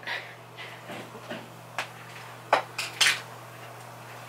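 Small glass plates clinking and knocking as they are picked up and handled, a few sharp clinks in the second half.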